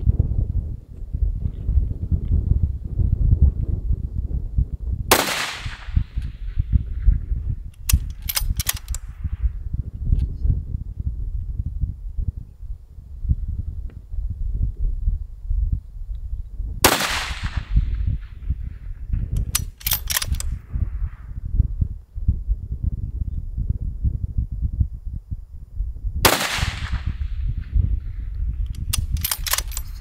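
Three rifle shots from a .308 bolt-action rifle on a Tikka action, fired roughly ten seconds apart. Each shot is followed about three seconds later by a quick run of clicks as the bolt is cycled. Heavy wind rumbles on the microphone throughout.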